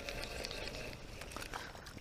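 Spinning reel being cranked to bring in a small hooked crappie: a faint whir with a few light ticks.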